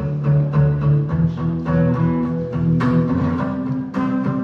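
Acoustic guitar strummed in a steady rhythm, about three strokes a second, with the chord changing about a second in and again near the end.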